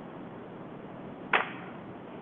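A single sharp knock or snap about two-thirds of the way through, the loudest thing here, over a steady hiss of room noise.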